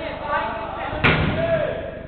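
One sharp, hard thud of a football being struck, about a second in, with players' voices around it.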